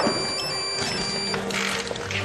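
A mobile phone's high electronic ringtone sounds for about a second and a half over soft background music.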